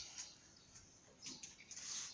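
Quiet background with faint, short bird chirps in the second half.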